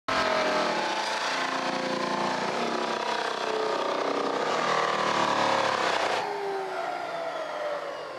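Electric floor sander running on timber decking boards, its motor pitch wavering as it works. The loud grinding cuts off abruptly about six seconds in, leaving a quieter, falling tone as it winds down.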